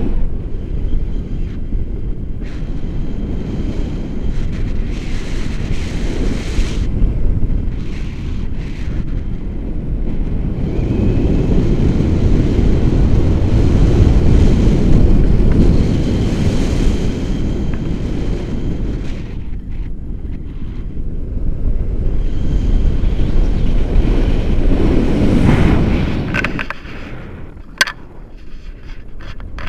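Wind rushing over an action camera's microphone on a selfie stick in flight under a tandem paraglider: a steady low rumble that swells louder midway and again near the end. It drops away just before a single short click at the very end.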